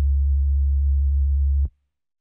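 A deep, steady electronic bass tone held as the closing note of the track, cutting off suddenly with a click about three-quarters of the way through.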